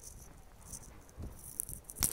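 Faint footsteps scuffing on a paved path as the walker carries the camera, with one soft low thump a little over a second in.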